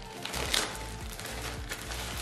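Background music, with the crinkle of a clear plastic poly bag being handled as a garment is unwrapped.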